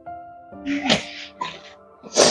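Soft background music with sustained tones, over which a woman sobs: two sharp, noisy sobbing breaths, the first and louder about half a second in, the second around a second and a half in.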